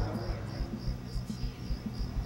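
A cricket chirping in a steady pulse, about four chirps a second, over a low background rumble.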